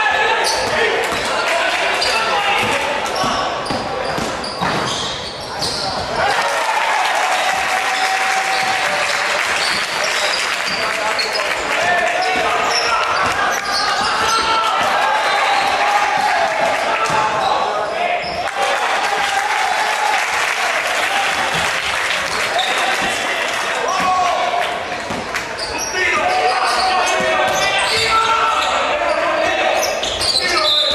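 Basketball being dribbled on a hardwood court in a sports hall, with indistinct voices of players and spectators echoing around it.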